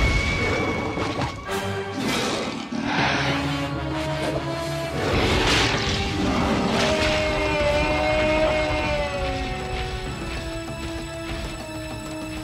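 Cartoon soundtrack: dramatic orchestral music with several heavy crashing impacts over it, the loudest near the start, as a large animated dinosaur hits the ground.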